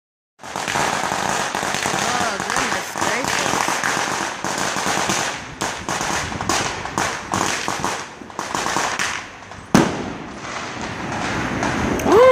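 Many firecrackers and fireworks going off at once in a dense, continuous crackle of pops, with one sharp, loud bang about three-quarters of the way through.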